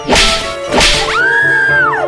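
Two sharp whip-crack swishes, about two thirds of a second apart, then a high pitched tone that rises, holds for most of a second and falls away, over steady background music.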